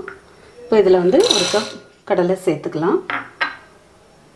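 Raw peanuts poured into a glass mixing bowl, a short rattling pour about a second in, with a voice talking over it.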